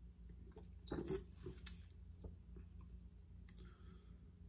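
A person gulping a drink from a can: a few swallows and wet mouth clicks, the loudest about a second in, over a low steady hum.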